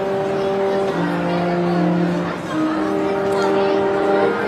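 Marching band playing slow, held chords, the harmony moving to a new chord about every second.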